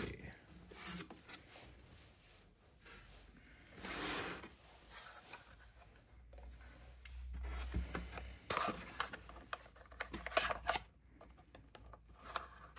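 Unboxing handling noises: a plastic RC radio transmitter scraping and rubbing against a polystyrene foam insert as it is pulled free. This is followed by a run of short plastic clicks as its battery cover is worked off.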